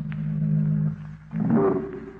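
Low sustained organ chord, a dramatic music sting in an old-time radio play. A second held chord comes in about a second and a half in.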